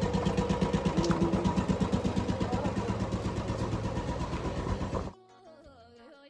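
A motor vehicle engine idling close by with a rapid, steady throbbing beat. It cuts off abruptly about five seconds in, giving way to faint background music.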